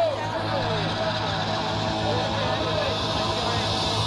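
A crowd of many voices calling and shouting at once over a steady rushing background noise with a low hum.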